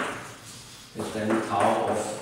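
Chalk on a blackboard: a sharp tap of the chalk striking the board at the start, then scraping strokes as a line is written. From about a second in, a man's voice murmuring drawn-out sounds while he writes.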